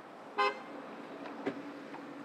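A single short car horn toot about half a second in, followed about a second later by a sharp click, over a steady low hum.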